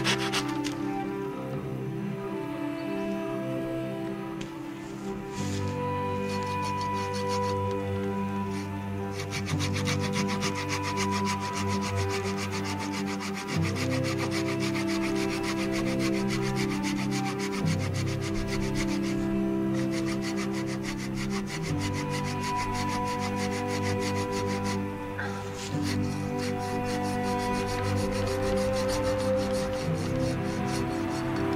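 Hand pruning saw cutting through a cherry branch in rapid back-and-forth strokes, with a few short pauses, over background music.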